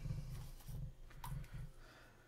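Bench handling noise while a soldering iron and solder wire are brought to a circuit board: three or four low bumps in the first second and a half, with a few light clicks.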